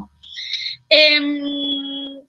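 A woman's voice: a short breathy hiss, then a long drawn-out vowel held at one steady pitch for over a second, a hesitation sound between sentences.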